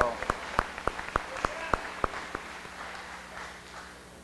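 Congregation applauding: a spread of hand claps that thins out and fades away over about three seconds.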